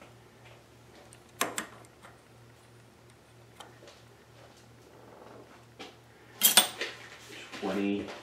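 Metal tools being handled on a lathe: a couple of sharp clicks about a second and a half in, then a louder metallic clatter near the end, over a faint steady low hum.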